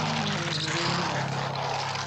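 Cartoon soundtrack: a steady, engine-like buzzing drone over low held notes that change pitch in steps.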